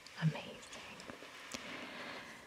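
Soft, faint whispering with a couple of light clicks.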